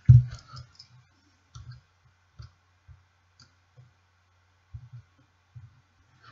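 Small, scattered clicks and taps of a tool and fingers handling a rebuildable tank atomizer on a box mod while cotton wicks are tucked into its deck, with a louder knock right at the start. A faint steady hum runs underneath.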